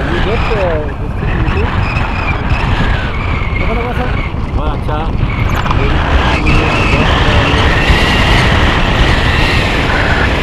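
Strong wind rushing over the camera's microphone in paraglider flight, a steady low buffeting, with a high steady whistling tone over the second half.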